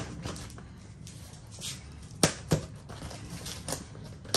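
Cardboard box being handled while its packing-tape seam is worked open: light scrapes and taps on the cardboard, with two sharp knocks in quick succession about two seconds in.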